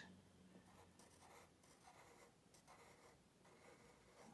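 Faint scratching of a coloured pencil on paper as a row of small curved strokes is drawn, a series of short strokes one after another.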